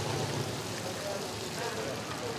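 Indistinct voices of several people talking in the background over a steady hiss.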